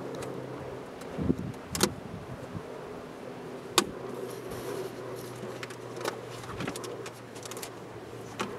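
A steady low mechanical hum, with several sharp clicks and knocks, the loudest about four seconds in.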